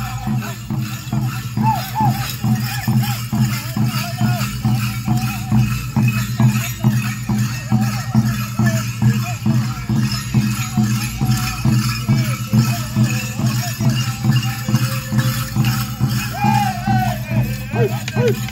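Apache Crown Dance song: a group of men beating small hand drums in a fast, steady beat of about three strokes a second, with male voices singing together over it.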